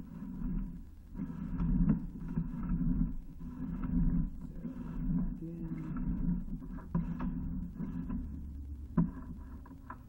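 Sewer inspection camera being pushed along a cast iron drain pipe: the pushrod and camera head rumble and scrape in uneven fits as they are fed in, with a few sharp knocks along the way.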